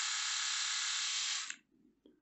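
Philips YS521 rotary electric shaver running with a steady buzz on its newly replaced rechargeable batteries, then switched off with a click about one and a half seconds in.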